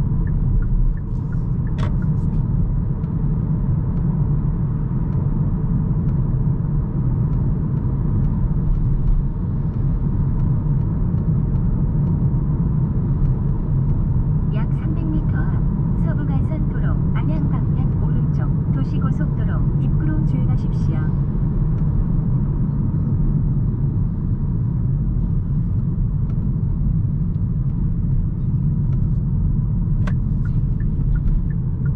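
Steady low rumble of road and tyre noise inside the cabin of a Hyundai Kona Hybrid driving at steady speed.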